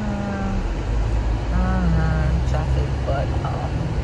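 Low, steady road and engine rumble of a moving car, heard from inside the cabin. A woman's voice comes over it in a few long, drawn-out sounds rather than clear words.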